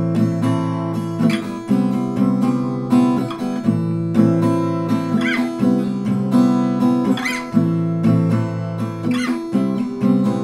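Acoustic guitar in a dropped tuning strummed in a down-down-up-up-down-up and down-up-down-up-up-down-up pattern, switching between two chords about every two seconds.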